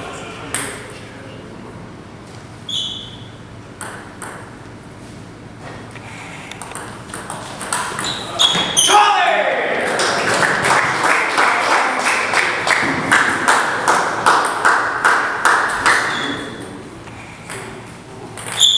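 Table tennis ball striking bats and the table: sharp clicks, some with a short high ping. About halfway through comes a faster run of clicks, two to three a second, over a steady rushing noise that dies away near the end.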